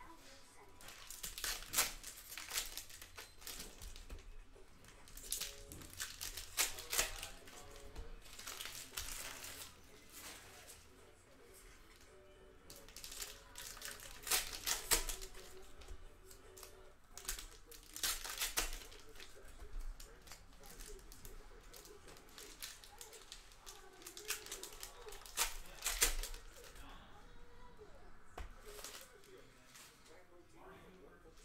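Trading cards being handled and laid one by one onto a stack, giving crisp card snaps and rustles in repeated bursts a few seconds apart.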